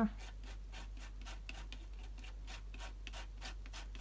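Palette knife spreading turquoise stencil butter through a plastic word stencil onto card, in quick repeated scraping strokes, about four or five a second.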